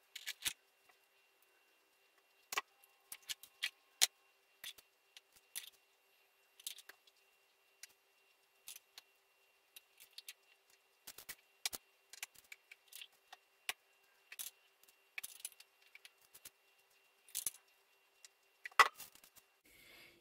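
Scattered clicks, taps and light scrapes of a spatula against a stainless-steel Thermomix mixing bowl as whipped egg whites are scooped out over a cake, with a louder knock near the end.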